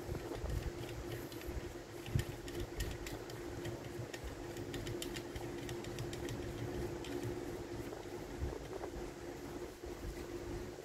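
Faint handling sounds of a Sandvik 227 aluminium-framed hacksaw as its handle is turned to tighten the blade back under tension: small scattered clicks, with a knock about two seconds in and another near the end, over a steady low hum.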